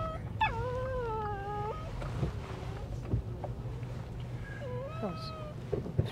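A dog whining inside a moving vehicle: long, high, drawn-out whines that rise and fall in pitch, one lasting over a second just after the start and another near the end, over the steady low rumble of the engine and tyres.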